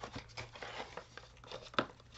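Packaging crinkling and rustling as a small item is handled and unwrapped, a run of light crackles and clicks with one sharper crackle near the end.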